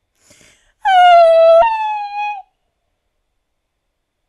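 A woman's high-pitched, wordless whining wail of about one and a half seconds, preceded by a quick breath. Its pitch steps up partway through.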